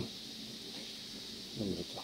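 A steady, faint hiss with nothing else happening in it, then a man's voice briefly near the end.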